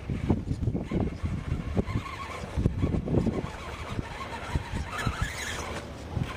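Radio-controlled rock crawler climbing over sandstone, its electric motor and gears whining faintly as it works. Wind rumbles on the microphone throughout and is the loudest sound.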